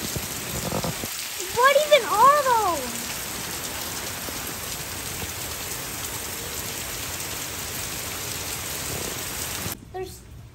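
Heavy rain pouring down in a steady hiss, stopping abruptly just before the end.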